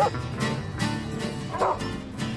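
A dog barks twice, once at the very start and once about one and a half seconds in, over steady background guitar music.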